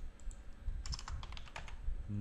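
Typing on a computer keyboard: irregular keystroke clicks, with a quick run of them around the middle.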